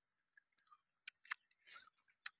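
Close-up mouth sounds of children chewing and biting cooked meat: scattered small wet clicks, a sharp one just over a second in and a short smacking noise near the end.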